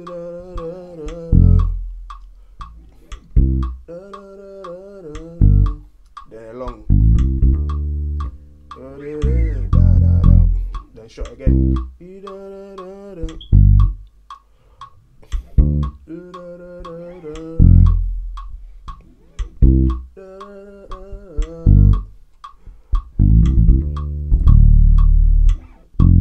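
Electric bass guitar playing a verse bassline along with a recorded song, mixing very short notes and long held ones. The bass notes fill the gaps between the lead vocal's phrases over a steady ticking beat.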